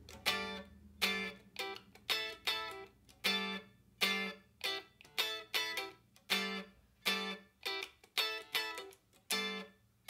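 Telecaster-style electric guitar playing a choppy, staccato funk groove in G: short G9 chord stabs and two-note fills, about two a second, each cut off quickly by left-hand muting so quiet gaps fall between them.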